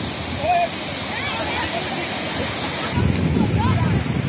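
Small waves breaking and washing up a sandy beach, a steady hiss of surf. About three seconds in, a low rumble of wind on the microphone grows louder.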